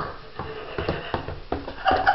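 A dachshund puppy's booted paws tapping and scuffing irregularly on a hardwood floor as it walks awkwardly in the booties.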